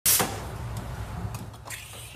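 A sharp knock right at the start, then the steady low hum of a commercial espresso machine with a few faint clinks of barista equipment being handled.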